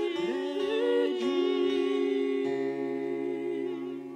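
Women's voices (sopranos and a mezzo-soprano) singing long held notes together in harmony, with vibrato; a lower note joins about halfway through.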